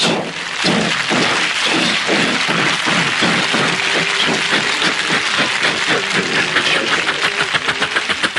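A man imitating battle noise with his voice into a microphone: a dense, rapid rattle of mouth-made machine-gun fire and blasts, the pulses growing more distinct near the end.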